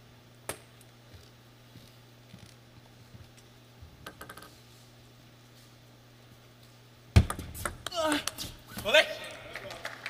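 Table tennis ball clicking lightly a few times over a steady arena hum, then about seven seconds in a sudden loud hit followed by shouting voices as a point ends.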